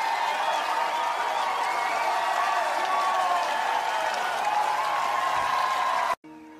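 Large concert crowd cheering and applauding at the end of a live song, many voices shouting together in a steady din.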